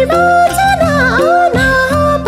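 Nepali song: a female voice sings an ornamented, gliding melody over a steady instrumental accompaniment with sustained low notes.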